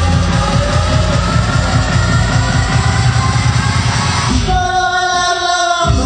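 Loud electronic dance music with a steady pounding kick-drum beat. About four seconds in, the bass and beat drop out, leaving a held synth chord, and the beat comes back at the very end.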